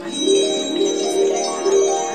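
A loud bell-like chiming tune of stepping ringing notes that starts suddenly.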